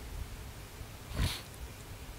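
One short breath by a person close to a headset microphone, about a second in, over a faint low hum.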